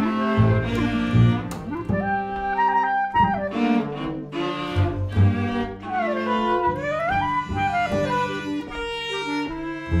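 Chamber trio of Albert-system B♭ clarinet, viola and gut-strung double bass playing together, the bass sounding low sustained notes under the clarinet and viola. Around the middle a melody line slides smoothly up and back down in pitch.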